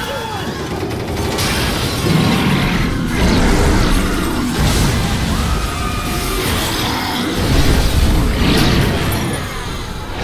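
Animated film soundtrack: dramatic music mixed with repeated crashes and low booms of destruction, swelling louder several times.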